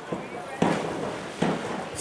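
A diver entering the pool water from a 1 m springboard: a sudden splash about half a second in, then a second short burst of noise just under a second later.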